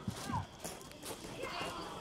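Footsteps of several people on concrete steps and gravel, under faint background chatter from a gathered crowd.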